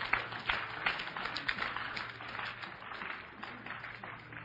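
Congregation applauding, dense at first and dying away toward the end.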